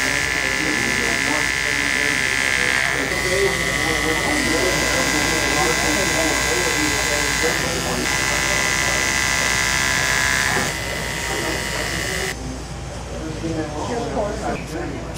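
Andis ceramic clipper with a 000 blade running with a steady high buzz while cutting hair, the buzz growing stronger and weaker as it works; it switches off about twelve seconds in.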